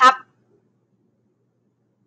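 A woman's voice finishing a word, then near silence.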